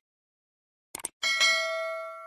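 A bell-like chime in a sparse stretch of music. Short clicks come just before the start and again about a second in, then one bright struck bell note rings out and fades slowly, with silence between the sounds.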